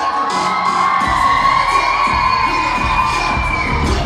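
Audience screaming and cheering, a long high-pitched shriek of many voices held for about three and a half seconds and falling away near the end. Under it the dance track's beat drops out and comes back in about a second in.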